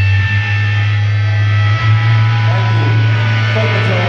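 Live rock band's amplified electric guitars and bass holding a loud, sustained drone over a steady low hum, with no drum beat; a few sliding tones come in during the second half.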